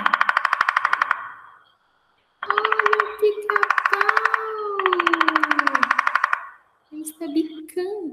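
Great spotted woodpecker drumming on wood: four very fast rolls of beak strikes, each one to one and a half seconds long, with short gaps between.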